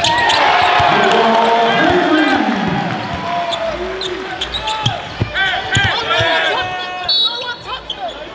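Basketball game sounds: a crowd cheers loudly for a dunk for the first couple of seconds, then sneakers squeak on the hardwood court and the ball bounces as play goes on. A short, high whistle sounds about seven seconds in.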